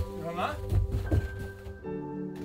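Background music of slow, held chords, with a few dull thumps over it and a brief voice.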